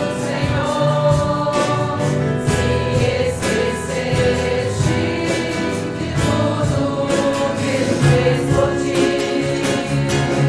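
Several voices singing a Portuguese hymn together, accompanied by a church band, with a steady beat.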